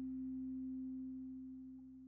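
A steady low drone, one held tone with fainter lower tones beneath it, fading out slowly.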